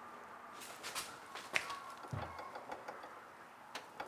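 Faint, scattered clicks and knocks of hands handling a thickness planer on its metal stand, with a sharper knock about a second and a half in.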